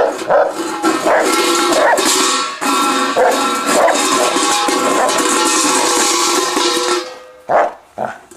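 A stainless-steel dog bowl scraping and rattling across concrete as a dog pushes it along with its nose, the metal ringing with a few steady tones. It stops abruptly about seven seconds in, with one brief clatter after.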